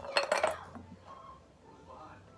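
Frozen strawberries dropped into a stemmed wine glass, a quick cluster of clinks against the glass in the first half second.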